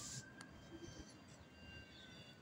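Near silence: faint outdoor background, with a single faint click about half a second in.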